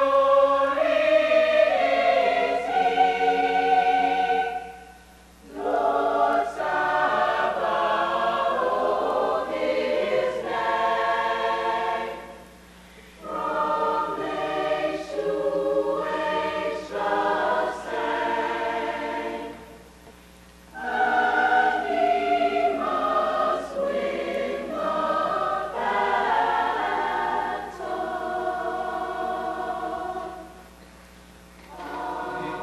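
A high school mixed choir singing sustained chords in long phrases, each broken off by a short pause, three times, with a further break near the end.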